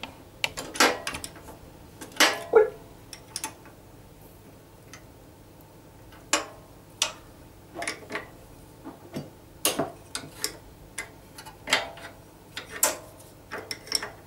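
A small spanner clicking and tapping against the metal fittings of a gas boiler while two small nuts are loosened, in a dozen or so irregular sharp clicks.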